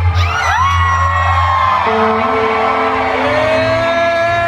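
A band playing live on electric guitar over a steady low bass drone. Held guitar notes slide up to pitch about half a second in and again near the end.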